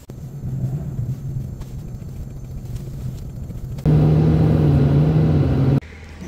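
Car engine idling steadily with a low hum, left running to keep the car warm. Near the end it gets louder and slightly higher for about two seconds, then cuts off suddenly.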